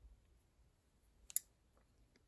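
Rubber loom bands being worked on a metal crochet hook: faint handling ticks and one sharp click a little past halfway.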